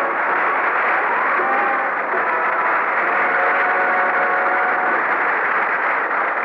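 A 1950s radio-drama orchestral bridge with brass, mixed with a loud, even wash of studio audience laughter and applause between scenes.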